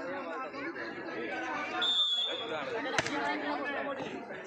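Chatter of players and onlookers at an outdoor volleyball match. About halfway through, a referee's whistle gives one short steady blast. About a second later comes a single sharp smack of a hand striking the volleyball for the serve.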